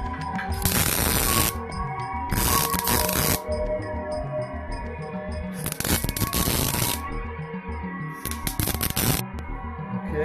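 Four short bursts of electric arc welding, each about a second long, crackling as steel braces are tack-welded onto a steel frame. Background music plays underneath.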